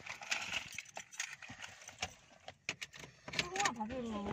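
Indistinct voices with scattered short clicks and knocks. A voice comes in more clearly near the end.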